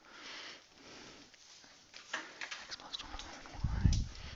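Faint classroom background noise: light rustling and small scattered clicks, with a soft low thump near the end.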